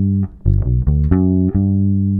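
Electric bass guitar playing a one-octave G major 7 arpeggio (G, B, D, F♯, G) as about five plucked notes in quick succession. The last note is held and rings on.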